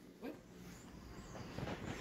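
Faint sniffing and snuffling from a Siberian husky nosing around the side of a recliner, with light rustling.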